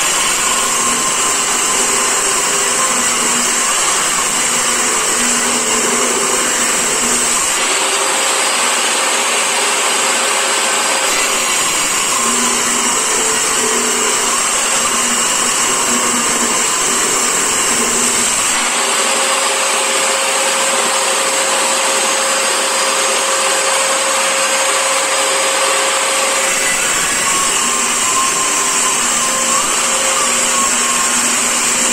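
Benchtop table saw running steadily under load, its blade ripping a thick wooden plank lengthwise. This is one of several passes to resaw it into two boards. The sound changes in character every several seconds as the plank is pushed through.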